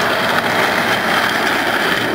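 Steady, loud rushing noise with no rhythm or changing pitch.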